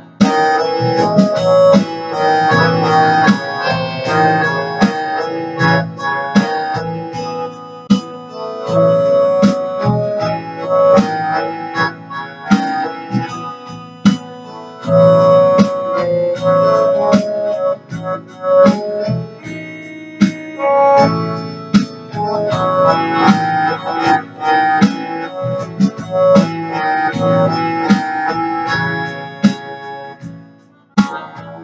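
An electronic keyboard played live: an instrumental melody with chords and accompaniment, the notes sharply attacked and running without a break.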